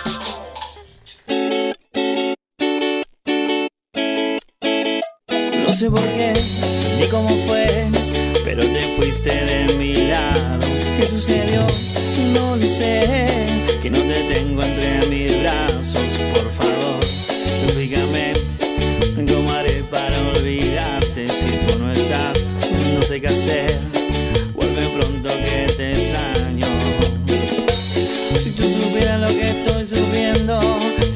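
Live Latin dance band with electric guitars, bass, keyboards and drums. After a brief fade it plays a run of about eight short, clipped chords with gaps between and no bass. About six seconds in, the full band comes in with bass and drums and plays on steadily with singing.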